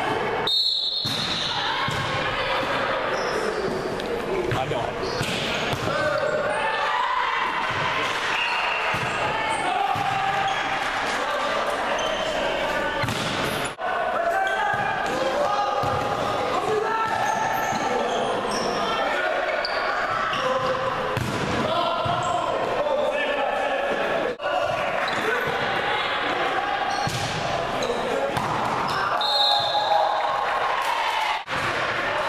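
Volleyball rally on a hardwood gym court: ball hits and squeaking, thudding shoes, under steady shouting and chatter from players and spectators that echoes in the hall. A short, high referee's whistle sounds near the start and again near the end.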